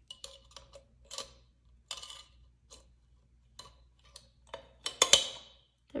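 A metal key clicking and scraping against an aluminium soda can's top and ring-pull as it is pushed into the drinking opening. The clicks are irregular; the loudest is a sharp click with a short scrape about five seconds in.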